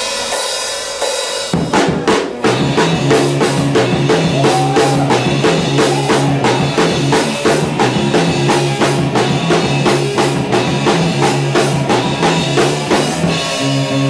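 A rock band playing live: a drum kit keeping a steady beat with snare and bass drum under electric bass notes. A cymbal wash opens, and the full band comes in about a second and a half in.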